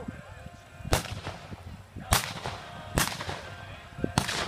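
Three revolver shots fired from horseback, each a sharp crack, about a second apart. This is cowboy mounted shooting, where single-action revolvers loaded with blank cartridges are fired at balloon targets on cones.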